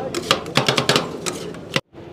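Two metal spatulas rapidly and irregularly clacking on the steel cold plate of a rolled ice cream counter as the ice cream mix is chopped and worked. The clacking cuts off abruptly near the end.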